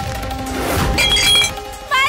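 A glass jar smashing about a second in, with a brief ringing of glass, over a steady dramatic music drone.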